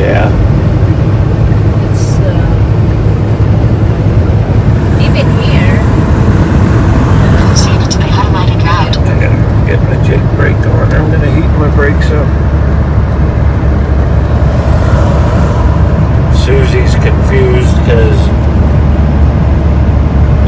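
Semi truck's diesel engine and tyre noise droning steadily inside the cab while cruising at highway speed.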